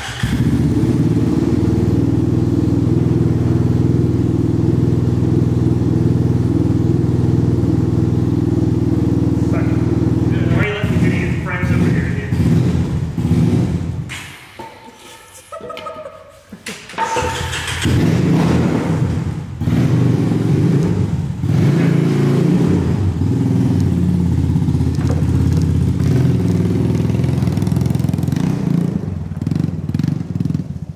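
ATV engine running: a steady idle for about ten seconds, a quieter break in the middle, then running again with uneven rises and falls in revs.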